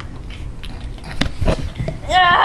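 Scuffling of people wrestling on a floor, with a few sharp knocks in the second half, over the low rumble of a handheld camera being jostled.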